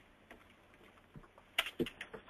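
Faint scattered clicks over a low hiss, then a quick run of sharper, louder clicks near the end, like typing on a computer keyboard.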